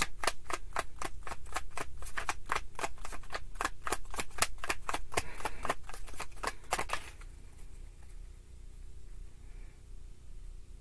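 Tarot card deck being shuffled by hand: a rapid, even run of card clicks, about six a second, that stops about seven seconds in.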